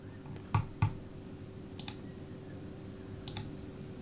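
Computer mouse clicks: two sharp clicks about half a second in, then fainter double clicks near two seconds and again past three seconds, over a faint steady hum.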